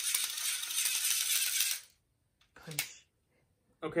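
Battery-powered string retractor of a NECA 1989 Batman grapnel launcher replica reeling its string back in with a rattling, clicking whir that stops about two seconds in. The retraction runs rough, not smooth.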